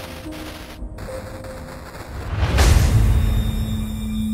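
Sound-design transition effect: a sudden burst of static-like glitch noise, then a rising whoosh that swells into a deep boom about two and a half seconds in, the loudest moment. A steady low tone begins near the end.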